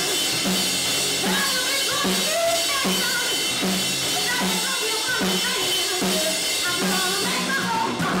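Rock band playing: a drum kit keeps a steady beat under an electric guitar while a woman sings.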